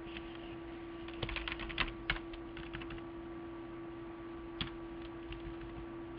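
Computer keyboard typing: a quick run of keystrokes from about one to three seconds in, then a single keystroke later on, over a steady low hum.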